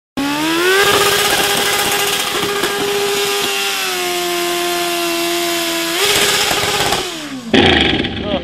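A small engine with a chainsaw-like sound revving up to a high, steady pitch. It holds with a slight drop about halfway, then winds down near the end. It cuts off abruptly into a louder, different sound just before the end.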